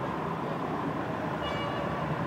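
City street traffic noise: a steady hum of vehicles, with a faint high tone coming in about halfway through.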